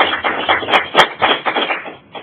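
A small audience clapping, a quick irregular patter of hand claps that dies away just before the end.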